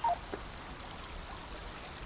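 Faint, steady outdoor background hiss with no distinct events, a quiet ambience bed between lines of dialogue.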